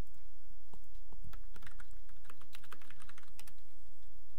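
A quick run of keystrokes on a computer keyboard, with the busiest stretch in the middle of the clip, over a steady low electrical hum.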